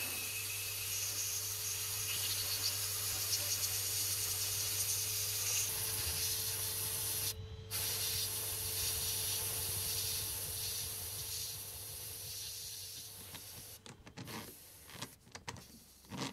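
Sandblast gun hissing steadily inside a blast cabinet as it blasts a lathe gear clean, over a steady low hum. The blast breaks off briefly about halfway, stops a couple of seconds before the end, and a few light knocks follow.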